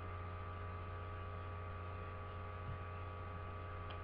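Steady low electrical mains hum with a faint hiss and a thin, steady higher tone above it.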